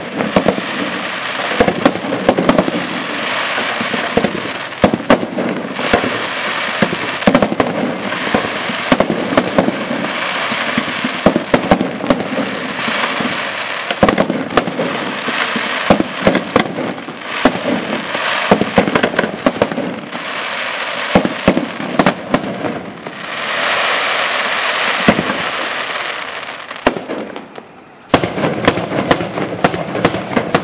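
Aerial firework display: shells bursting in rapid, overlapping bangs over continuous crackle. There is a steadier, denser stretch about two-thirds of the way through and a brief lull just before the end, after which the bursts resume.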